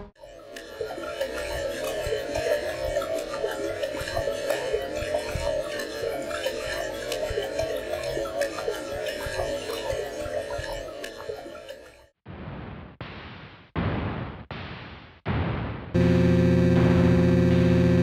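Harsh noise-ambient music: a dense, crackling, bubbling noise texture that runs for about twelve seconds and then drops away. Five short bursts of noise follow, each fading out, before a loud, steady drone of held tones takes over near the end.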